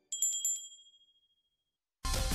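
A short, bright chime sound effect with the on-screen logo: a few quick metallic strikes, then one high tone ringing out and fading within about a second.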